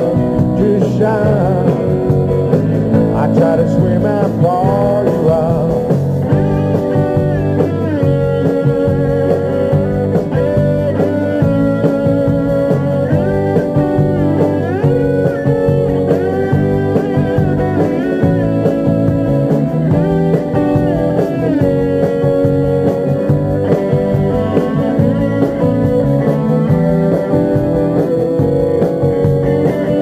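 Live rock band playing an instrumental passage at full loudness, led by electric guitars: a hollow-body electric and a solid-body electric guitar over a steady band accompaniment.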